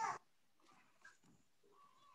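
Near silence on a video call: faint room tone, with only the tail of a spoken word at the very start.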